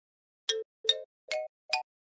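Four short cartoon pop sound effects, about 0.4 seconds apart, each a step higher in pitch than the one before. They come one for each of four puzzle pieces popping into view.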